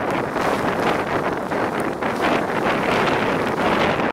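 Steady wind buffeting the microphone, a dense even rush of noise with no tone in it.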